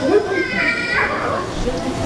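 A child speaking, with other children's voices chattering in a large hall.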